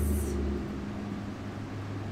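Steady low mechanical hum of room noise, with a deeper rumble under it that stops less than a second in.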